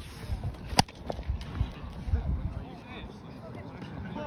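A hurley strikes a sliotar once, a single sharp crack about a second in, with wind rumbling on the microphone.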